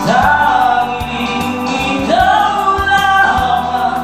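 A man singing a slow ballad into a handheld microphone over a karaoke backing track, holding two long notes that each scoop up into pitch, the second starting about two seconds in.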